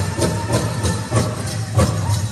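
Powwow drum music: a big drum struck in a steady beat, about three beats a second, with the dancers' bells jingling.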